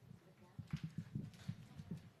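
Faint run of quick, irregular light knocks and taps, about six a second, starting about half a second in.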